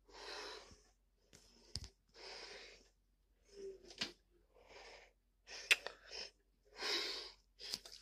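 A person breathing noisily close to the microphone, about one breath a second, with a few sharp clicks between the breaths.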